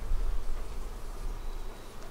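Honeybees buzzing at an open hive, over a steady low rumble.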